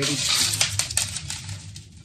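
Loose granular semi-hydro substrate spilling and scattering out of a clear plastic pot as a plant is worked free of it: a dense rattle of many small clicks that dies down near the end.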